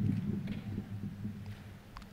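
Quiet hall room tone with a low hum that fades over the first second.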